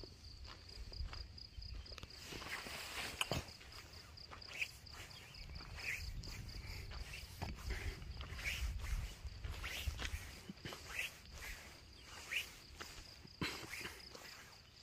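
Footsteps of someone walking, with irregular short steps, over a steady, rapidly pulsing chirp of insects that runs throughout.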